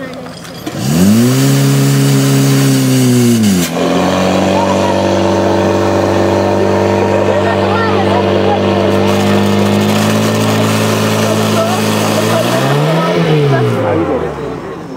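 Portable fire pump's engine revved sharply up to full speed about a second in. Near 4 s it drops to a slightly lower steady high-revving note and holds there, then rises and falls once near the end.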